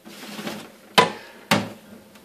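Two sharp knocks, about half a second apart, as glass jugs are handled and bumped on a kitchen counter, each with a short ring.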